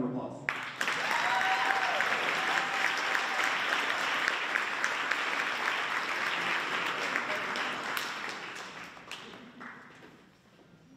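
Audience applauding. The clapping starts about half a second in, holds steady, then fades away over the last two seconds.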